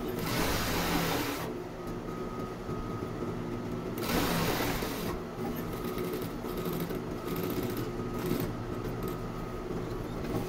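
Industrial flatbed sewing machine stitching in short runs over the steady hum of its motor, with two louder spells of stitching: one in the first second and a half, and one around four seconds in.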